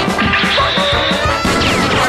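Upbeat theme music with percussive hits and crash sound effects.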